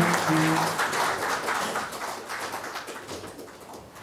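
Audience applauding at the end of a talk, the clapping fading steadily over a few seconds.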